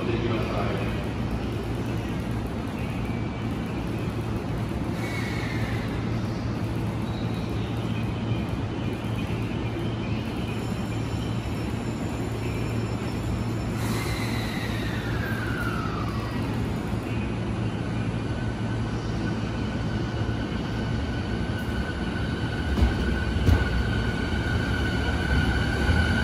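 A JR 209 series electric commuter train standing at a station platform with a steady low hum. A high steady whine joins about two-thirds of the way through, and in the last few seconds the train starts to move off with low rumbling that grows louder.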